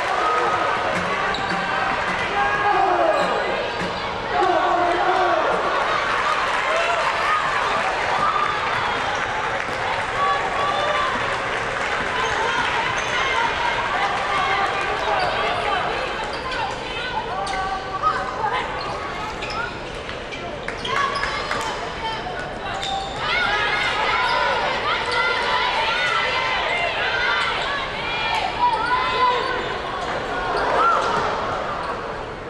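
Live sound of a basketball game in an arena: sneakers squeaking on the hardwood court and the ball bouncing, over the voices of players and crowd in a large hall. A few sharper knocks come in the second half.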